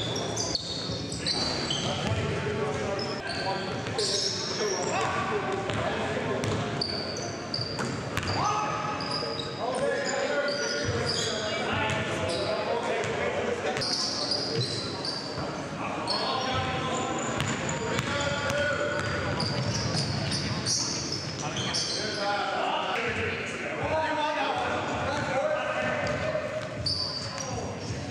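Live sound of a basketball game in a large gym: a basketball bouncing on the hardwood floor, sneakers squeaking in short high chirps, and players calling out, all echoing in the hall.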